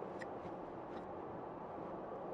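Faint, steady road and tyre noise inside the cabin of a moving Mercedes-Benz EQS 580 electric sedan, with no engine sound, broken by a couple of faint ticks.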